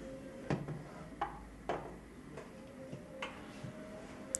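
A few light, sharp clicks and knocks of a metal wheelchair frame being handled at its leg-rest fittings, spread over a few seconds against a faint steady room hum.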